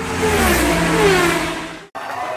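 Car engine passing by as an intro sound effect: it builds to a peak and drops in pitch as it goes past, then cuts off abruptly near the end.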